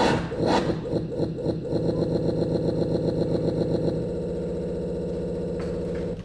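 A loud, engine-like electronic buzz from the stage musician's equipment: pulses that quicken into a fast buzz and settle into a steady drone, then cut off suddenly near the end.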